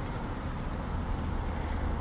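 Crickets chirping in a steady, even pulse of a high tone, several pulses a second, over a low steady rumble of traffic.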